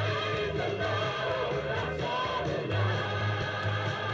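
Music with a choir singing over a steady low accompaniment.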